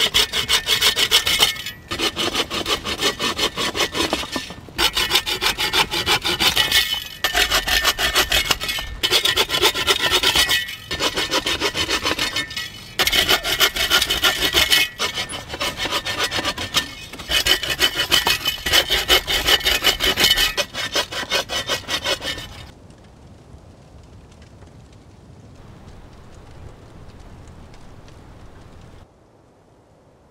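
Bow saw cutting dry firewood logs with rapid back-and-forth strokes, in runs of about two seconds broken by short pauses. The sawing stops well before the end, leaving only faint background noise.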